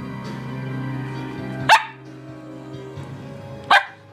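A collie-type dog barking twice, two sharp single barks about two seconds apart, over music playing in the background.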